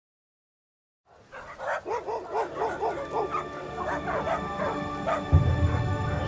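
A dog barking in a quick run, about three barks a second, then fewer and fainter, over held music tones. A deep low music drone swells in about five seconds in.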